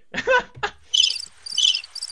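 Cricket-chirp sound effect: short high chirps about twice a second, starting about a second in. It is played as the stock awkward-silence gag, marking a remark that fell flat.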